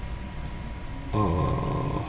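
A man's voice drawing out a long hesitant 'a' that falls slightly in pitch, starting about a second in, over a steady low background hum.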